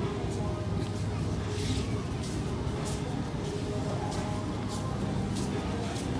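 Supermarket ambience: indistinct voices and background music over a steady low hum, with faint regular soft strokes about every half second or so.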